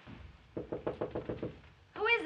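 Rapid knocking on a wooden door, about ten quick raps in a row.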